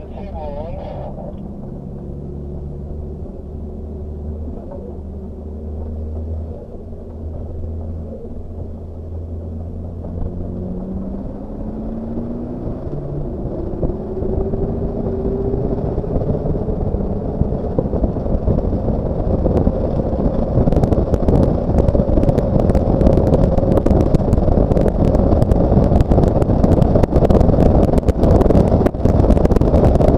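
Kia Sportage QL race car's engine heard from inside the cabin, accelerating hard down a straight. Its pitch climbs and it gets steadily louder under rising road and wind noise, with a patter of clicks and rattles over the last third.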